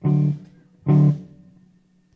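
Electric guitar, SG-style, playing two short, loud chords about a second apart in a sparse opening riff, each one cut short and fading out.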